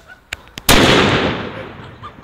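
FP3 firecracker going off: one very loud bang about 0.7 s in, whose sound dies away over about a second. Two faint clicks come just before it.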